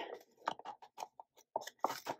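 Glossy sticker sheet being handled and a sticker peeled from its backing: a string of irregular small crackles and ticks, about a dozen across two seconds.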